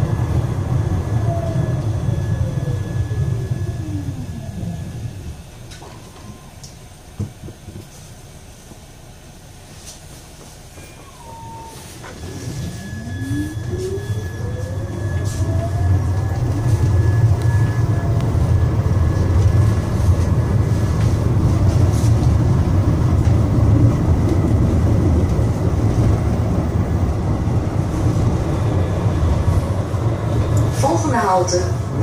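Siemens Avenio low-floor tram heard from inside the passenger saloon. Its traction drive whine falls in pitch as the tram slows to a standstill, and it stands quietly for several seconds with a single click. Then the whine rises as it pulls away, and the steady rumble of the wheels on the rails builds back up.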